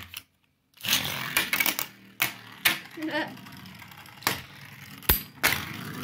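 A Beyblade spinning top ripped off its launcher about a second in, then two metal Beyblades spinning and rattling on a plastic tray, with several sharp clacks as they collide.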